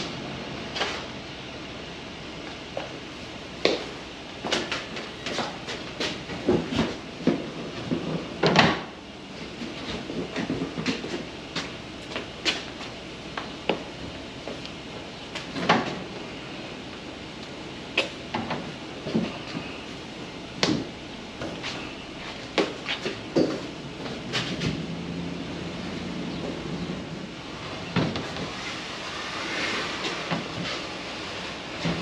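Plastic kayak hull being pushed and rolled onto a small utility trailer over PVC-pipe-sleeved bars: irregular knocks and clunks over a low rolling rumble, the loudest clunk about a third of the way in. The hull slides on smoothly, without metal-on-plastic grinding.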